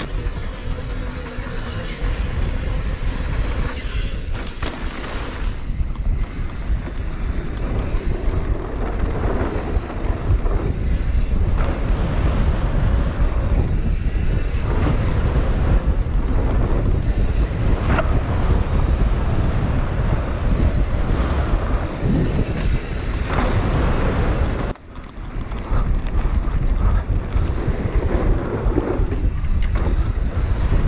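Wind buffeting a helmet-mounted GoPro's microphone as a mountain bike rides fast down a dirt jump trail, with tyre noise and rattles and knocks from the bike. The sound briefly drops out about 25 seconds in, then picks up again.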